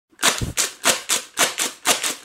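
Paper party blower blown in quick short puffs, about seven in two seconds, each a breathy rasp without a clear note.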